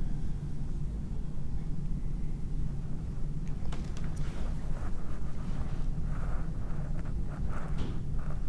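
Faint small clicks and rustles of round-nose pliers working thin jewellery wire, over a steady low hum.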